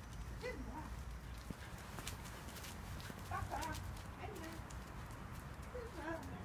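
Footsteps of a person and a dog walking on asphalt, light irregular knocks, with a few faint short calls.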